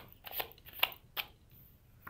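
Tarot cards being handled: a few short, crisp snaps and rustles as cards are shuffled and one is drawn from the deck.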